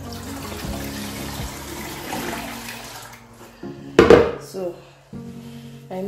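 Wet corn slurry (ogi) pouring from a plastic bowl into a cloth straining bag in a steel pot, a steady watery pour for about three seconds. About four seconds in comes a brief, loud, sudden sound, with background music underneath.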